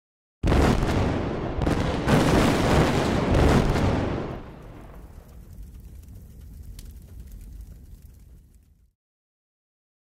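Intro sound effect of explosion-like hits: a sudden loud start with several more hard hits in the first few seconds, all with a heavy low rumble. It then fades into a long low rumble that cuts off about nine seconds in.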